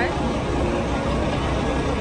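Steady low rumble of idling vehicle engines mixed with the background chatter of a busy roadside eatery.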